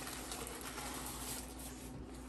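Paper sandwich wrapping crinkling and rustling as it is unwrapped by hand, with a faint steady hum underneath.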